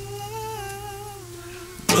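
A soft hummed vocal note wavers gently over a sustained low bass tone in a quiet passage of the song. Just before the end, the full band and loud singing come in abruptly.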